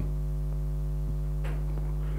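Steady electrical mains hum: a low buzz with several evenly spaced overtones, holding at a constant level. A faint click comes about a second in.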